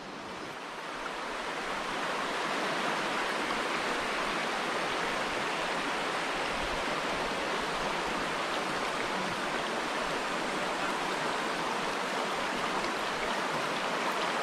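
Shallow stream running over stones: a steady wash of moving water that fades up over the first two seconds and then holds even.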